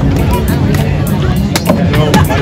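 A machete blade chopping into a green coconut: several sharp, irregularly spaced chops, over music and voices.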